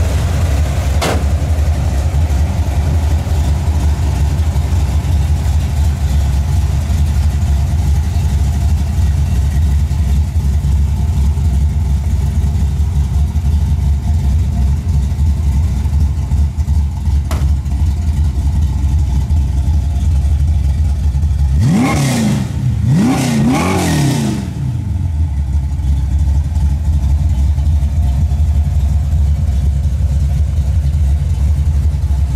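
A 1970 Ford Mustang Boss 302 tribute's 302 V8 idling steadily with a deep low rumble. About 22 seconds in it is revved three times in quick succession and drops back to idle.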